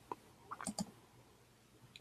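A few faint, brief clicks of a computer mouse, one at the very start and a quick cluster a little over half a second in, as a presentation slide is advanced.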